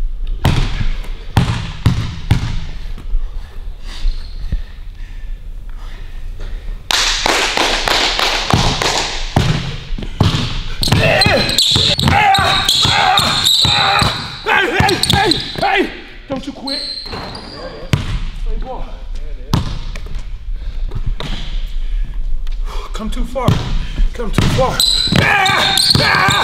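Basketball dribbled rapidly and hard on a hardwood gym floor, a long run of quick bounces in a large hall, with short high squeaks in between.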